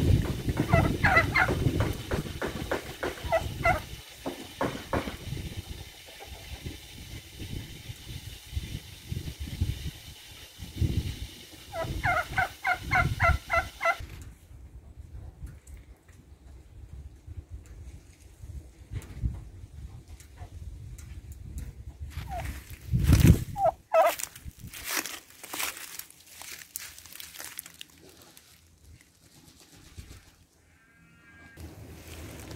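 A turkey calling in rapid runs of short notes, once near the start and again about twelve seconds in, over low rumbling noise on the microphone. A loud knock about three-quarters of the way in.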